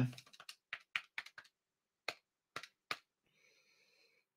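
Computer keyboard keys being typed: a quick run of about nine light clicks in the first second and a half, then a few separate taps between the second and third seconds.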